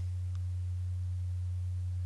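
Steady low electrical hum, one unchanging deep tone with nothing else over it.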